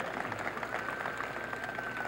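A pause in speech filled by steady background noise, like the hum and hiss of a busy room, with a faint thin high tone held through the second half.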